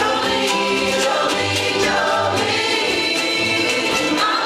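Live ukulele ensemble strumming a song in steady rhythm, with many voices singing together over it and an upright bass playing low notes underneath.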